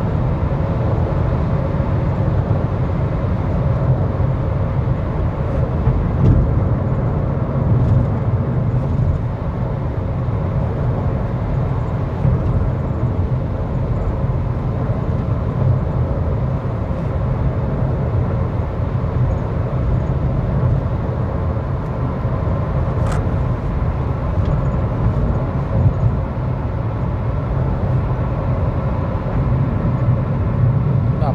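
Steady road noise inside the cabin of a Honda Civic cruising on the highway: a continuous low tyre-and-engine rumble.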